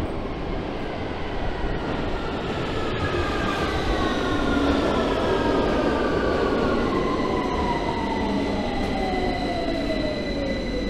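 London Underground Victoria line 2009 stock train running into a station platform and braking. A deep rumble builds, with several whines falling steadily in pitch as the train slows.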